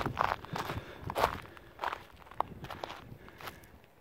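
Footsteps crunching on gravel, a string of uneven steps.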